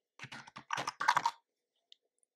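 Computer keyboard typing: a quick run of keystrokes lasting a little over a second, then stopping.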